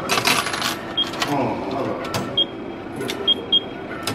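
Subway ticket vending machine in use: short high electronic beeps, about five across the few seconds, among mechanical clicks and rattles as the cash transaction goes through.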